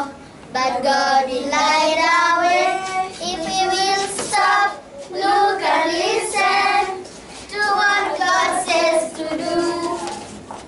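A group of children singing together in sung phrases, with brief pauses between them.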